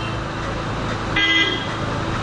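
A single short vehicle horn honk a little over a second in, over steady road traffic noise.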